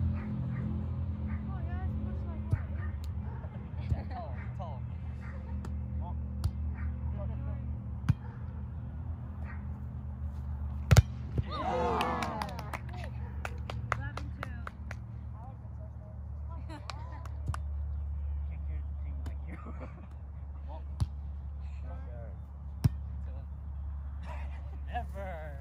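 Volleyball being struck by players' hands and arms: sharp single slaps every few seconds, the loudest about eleven seconds in, followed by a brief shout. Faint voices and a steady low rumble run underneath.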